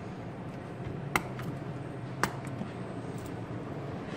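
Two sharp clicks about a second apart as the metal press-stud snaps on the two leather straps of a leather-covered cigar humidor case are pulled open, over a low steady hum.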